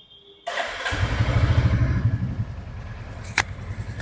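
2024 Royal Enfield Bullet 350's 349 cc single-cylinder engine started on the button, catching about half a second in, running up briefly and then settling to a steady idle through the exhaust. A single sharp click sounds near the end.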